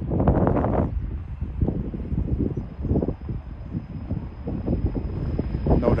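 Gusty wind buffeting the microphone, an uneven low rumble that rises and falls.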